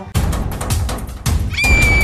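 Loud edited music and sound effect: a deep rumbling burst from the start, joined about one and a half seconds in by a steady high held note.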